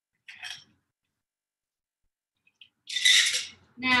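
Cocktail shaker and glassware handled as a cocktail is strained into a highball glass: a short rattle about a third of a second in, near silence, then a louder, longer rattle about three seconds in.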